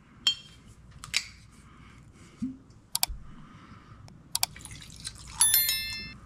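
A few sharp clicks and light knocks from handling a glass whiskey bottle and a steel tumbler, then near the end a short squeaky ringing as the cork stopper is pulled from the bottle's glass neck.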